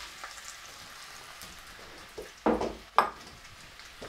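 Chopped onions and sliced chorizo sizzling faintly in hot olive oil in a pot, with two louder knocks about two and a half and three seconds in.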